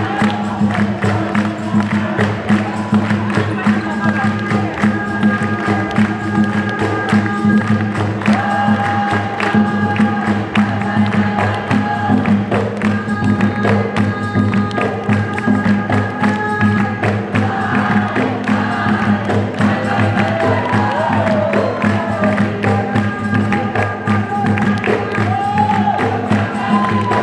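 Capoeira roda music: berimbau-led percussion with a group singing call and response, over steady rhythmic hand-clapping from the circle.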